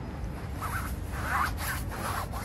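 Zipper on a camping tent's door being worked in a couple of short pulls, with the nylon tent fabric rustling.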